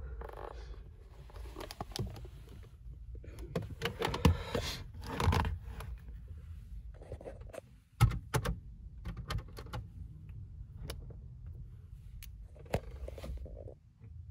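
Handling noise: scattered small clicks, scrapes and knocks over a low steady hum, with one sharper click about eight seconds in.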